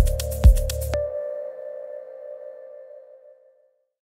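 Electronic soundtrack music with a steady kick-drum beat of about two beats a second, which stops about a second in; a held tone rings on and fades away.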